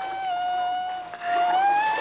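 Radio-drama sound effect of a dolphin's call: one long, high whistle held steady, then gliding upward in pitch near the end.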